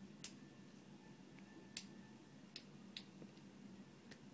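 Quiet room with four faint, sharp clicks at uneven intervals.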